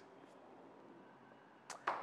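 Quiet room tone in a pause between speech; near the end, a short breath and mouth click as the man starts to speak again.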